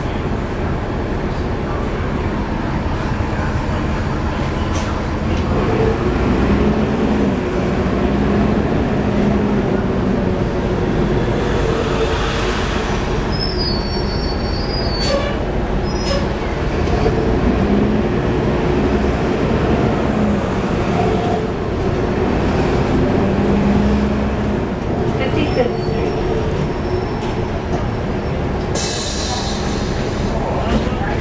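Cummins ISL9 diesel engine of a 2011 NABI 40-SFW transit bus heard from the rear seats, with its pitch rising and falling several times as the bus pulls away and slows in traffic, over steady road noise. A short burst of air hiss comes near the end.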